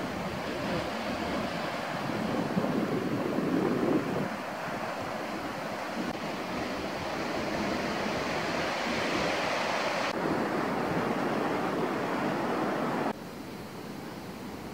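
Sea surf washing and breaking over a rocky shore, a steady rushing noise with some wind on the microphone. The sound changes abruptly a couple of times and drops to a quieter level near the end.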